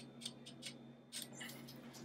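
Toaster oven's mechanical timer knob being wound: several faint ratcheting clicks, ending a little past a second in, over a low steady hum.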